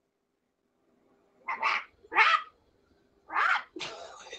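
A woman imitating a chicken with her voice: four short chicken-like calls, the first about a second and a half in.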